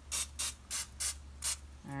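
Olive oil cooking spray spritzed over panko-coated banana pieces in a quick run of short hissing sprays, about three a second, stopping about a second and a half in.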